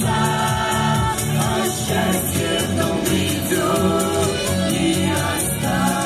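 A mixed vocal quartet, two men and two women, singing a song in harmony into microphones, amplified through stage loudspeakers over a musical accompaniment with a steady bass line.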